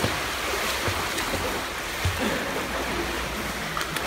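Pool water splashing and churning as a child swims, kicking and paddling at the surface.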